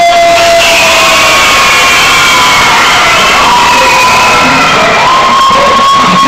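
A crowd of people cheering and shouting, loud and continuous, with long drawn-out held shouts rising above the noise.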